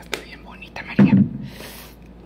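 A low thump about a second in, the loudest sound here, then a brief hiss of a cosmetic spray bottle misting, among small handling clicks.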